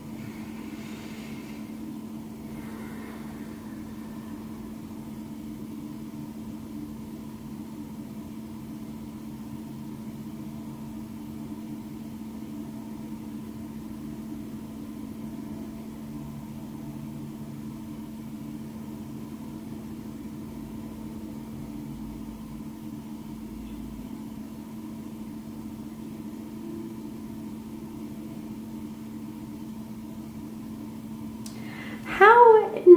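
A steady low machine-like hum, one strong low tone with fainter tones above it, holding level; a faint brief rustle in the first couple of seconds.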